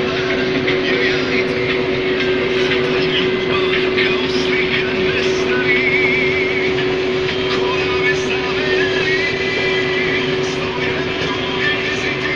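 Case IH 1620 Axial-Flow combine running under load while harvesting corn, heard from inside the cab: a steady hum with a constant, dense mechanical rattle of the engine, header and threshing works. Faint warbling high-pitched tones come in twice near the middle.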